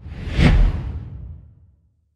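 Logo-reveal sound effect: a whoosh over a deep low boom, loudest about half a second in, then fading away over the next second and a half.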